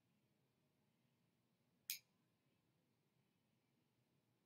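Near silence, broken once about two seconds in by a single short, sharp click: a makeup compact snapping open.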